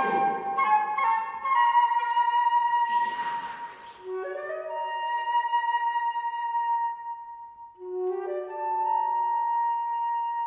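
Flute music in a slow classical piece: long held notes overlapping, moving to new pitches about four and eight seconds in. A breathy rush of noise swells and fades about three and a half seconds in.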